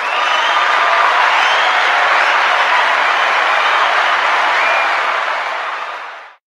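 Recorded crowd applause and cheering that starts abruptly and fades out near the end, played as a sound effect to acknowledge a viewer's donation.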